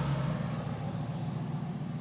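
Steady low hum of a running engine or motor, slowly fading.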